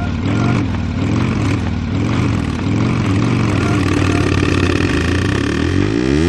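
Engine-like revving sound effect opening the next track of a eurodisco mix: a low pitch wavers up and down about twice a second over a steady drone, then sweeps as the dance beat comes in at the end.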